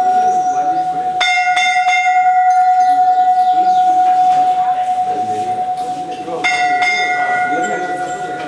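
Temple bells ringing during a puja. One bell rings steadily throughout, and a few sharper, ringing strikes come about a second in and again a little after six seconds.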